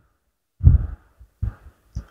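Low thumps on a clip-on lapel microphone in a pause between words: one about half a second in with a brief rush of noise, then smaller ones near a second and a half and near the end.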